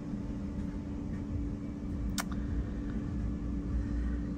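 Steady low background hum with a faint constant tone, and a single brief click about two seconds in.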